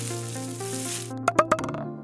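Intro logo jingle: held musical notes under a hissing whoosh that fades out about a second in. A few sharp clicks follow, and the music dies away near the end.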